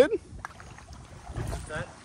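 Faint outdoor hiss with a soft low rumble of wind on the phone's microphone, swelling for about half a second in the middle, after a man's voice trails off at the very start.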